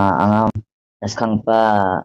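Speech only: a voice speaking in long, drawn-out syllables, with a short pause about half a second in.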